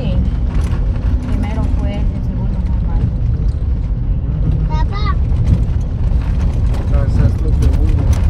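Moving car heard from inside the cabin: a steady low rumble of engine and road noise while riding along.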